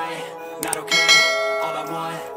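Background music with a bell-like chime struck about a second in, its bright tone ringing on and slowly fading.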